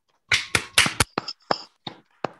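One person clapping over a video call: about ten quick, sharp claps, louder in the first second and tapering off.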